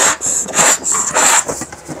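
A child blowing into a rubber balloon in short, quick puffs, about three a second, easing off near the end.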